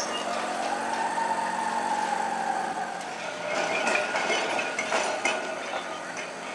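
Blackpool boat tram 233 rolling slowly over curved street track, with a whine that rises and falls over the first few seconds. Then a run of sharp clacks as its wheels cross the rail joints and switches of the track junction.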